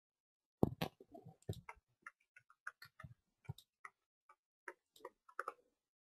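Computer keyboard being typed on: an irregular run of short, sharp clicks picked up by a desk microphone, the first few about half a second in the loudest.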